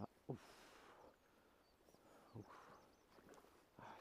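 Near silence, broken by a man's short grunts of effort, 'oof', twice, as he strains against a hooked salmon on the rod.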